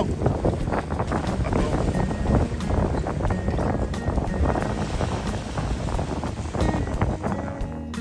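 Sea surf washing over shoreline rocks with wind buffeting the microphone: a continuous dense rush with scattered knocks and clatters.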